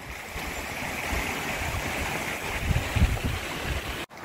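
A rocky mountain stream rushing steadily, with gusts of wind rumbling on the microphone, strongest about three seconds in. The sound cuts off abruptly at the end.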